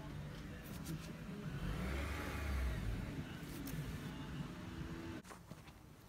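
A distant motor vehicle's engine over a low steady hum, swelling and fading about two to three seconds in, with a few light clicks of handling. The level drops near the end.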